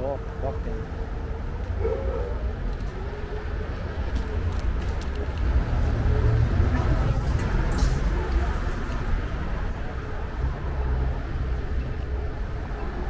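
Low, uneven rumble of wind and wheels on pavement as an electric scooter rides along a city sidewalk, with street traffic going by; it swells a little about halfway through.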